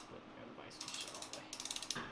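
Ratchet head of a Tekton 3/8-inch-drive click torque wrench clicking fast in two short runs, about half a second each, as the handle is swung back.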